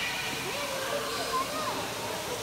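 Steady rushing-water noise filling a large indoor space, with faint distant voices underneath.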